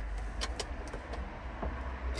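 Low steady rumble inside a small electric car's cabin, with a few light clicks.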